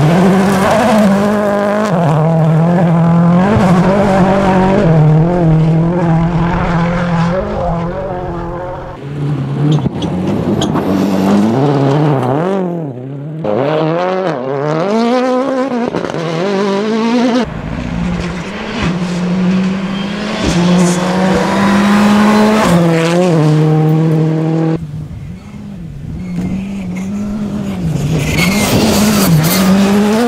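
Rally cars driven hard on a gravel stage, one after another, their turbocharged four-cylinder engines revving up and dropping back through gear changes, with long rising and falling sweeps of pitch as a car goes by.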